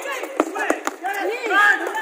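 Basketball bouncing on an outdoor hard court during play, a few sharp thumps, with players' voices and calls around it.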